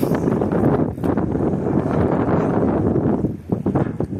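Wind buffeting the microphone, a loud rumbling noise that rises and falls in gusts and drops briefly about a second in and again near the end.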